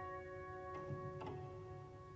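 Soft, slow piano music: held notes slowly fading, with two quiet notes struck near the middle.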